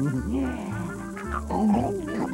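Cartoon music with sound effects for an animated chalk dinosaur: wavering, gliding voice-like sounds and short rough growls over a steady bass line.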